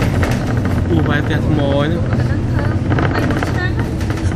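Steady low rumble of a moving bus's engine and road noise heard from inside the cabin, with voices talking over it.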